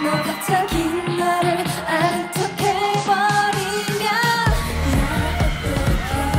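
K-pop song: female singing over a dance-pop backing track with a steady beat. A heavy bass line comes in about four and a half seconds in.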